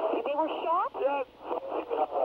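Speech on a recorded emergency phone call: a man's voice with the narrow, thin sound of a telephone line.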